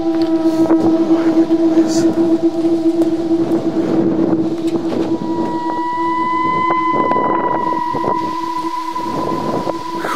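A steady humming drone, joined about halfway by a second, higher steady tone, over wind noise on the microphone and irregular crunching footsteps.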